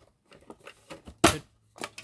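Plastic cover of an all-in-one computer's stand being pulled off its steel base plate by hand: a run of small clicks and rattles, with one much louder click about a second in.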